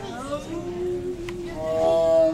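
Siberian tiger giving long, steady, owl-like moaning calls: a lower held note through the middle, then a higher, louder one near the end.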